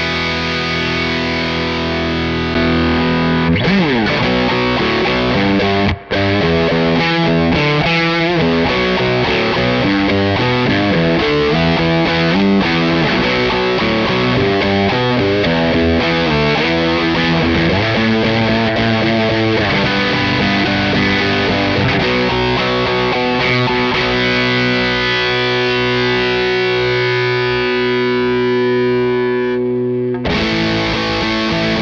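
Single-coil electric guitar played through the Crazy Tube Circuits Motherload's RAT-inspired distortion circuit, with the linked Muff tone circuit shaping it. It opens on a held chord with a pitch slide a few seconds in, then a run of fast riffing, and ends on chords left ringing.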